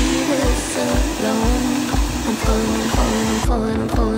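Handheld hair dryer blowing on hair, a steady hiss under background music with a beat about twice a second. The hiss cuts off about three and a half seconds in while the music carries on.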